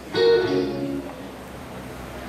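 Instrumental music: a chord is struck a fraction of a second in and rings out, fading over the next second to a quieter held tone.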